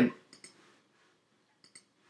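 Faint computer mouse clicks, two quick pairs about a second and a quarter apart, as the pointer works dialog buttons in the design software.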